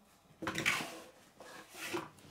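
Paper and card rubbing and scraping against the inside of a cardboard LEGO box as a sticker sheet is pulled out. It comes in two short bouts of rustling, about half a second in and again in the second half.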